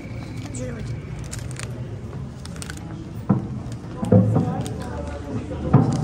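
Indistinct voices of several people talking in a stone hall, with a couple of sharp knocks, one a little past three seconds in and one near the end.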